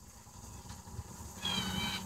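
Quiet background, then a faint, short, high-pitched animal call about one and a half seconds in.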